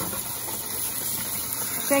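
Kitchen sink faucet running a steady stream of water onto diced sweet potatoes in a metal colander, a continuous hiss.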